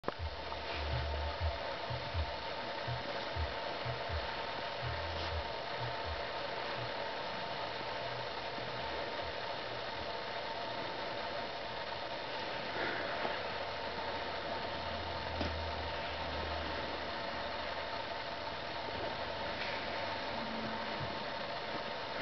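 A steady mechanical hum with a faint hiss, with a run of low thuds and bumps in the first several seconds.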